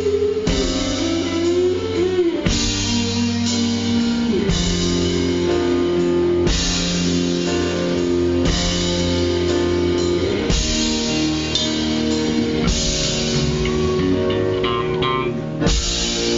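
Live rock band playing an instrumental closing passage without vocals: electric guitar and drum kit over sustained chords that change about every two seconds.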